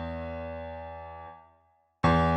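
Yamaha MODX's sampled acoustic piano preset: a held chord dying away, then damped out about a second and a half in as the keys are let go.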